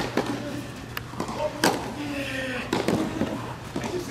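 Tennis rally on a clay court: sharp racket-on-ball strikes about once a second, with a voice heard between the shots.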